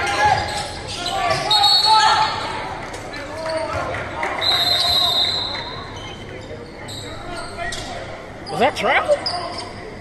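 Basketball game play on a hardwood gym floor: the ball bouncing, players shouting, and short high sneaker squeaks, all echoing in the large hall.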